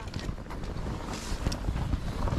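Wind buffeting the microphone, with a few faint, sharp clinks of rime-ice-coated tree branches knocking together in the wind, which sound like crystal.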